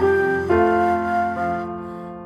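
Soft instrumental background music: sustained keyboard notes that change every half second to a second and fade toward the end.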